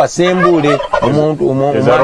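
Only speech: a man talking continuously, with some drawn-out vowels.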